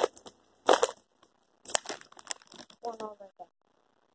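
A plastic snack bag crinkling as it is handled, in a few short bursts with sharp clicks between them. A brief voice sound comes near the end.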